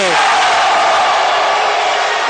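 Loud, steady crowd noise from basketball spectators shouting just after a three-pointer ties the game.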